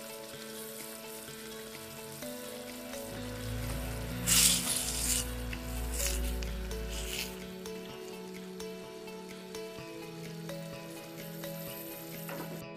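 Onion and red pepper sauce sizzling and bubbling in a metal pan, with a spoon stirring and scraping through it from about four to seven seconds in. Soft background music with long held notes plays throughout.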